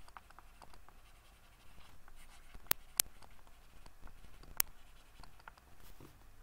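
Pen stylus scratching and tapping on a drawing tablet in short handwriting strokes. Three sharp clicks stand out near the middle.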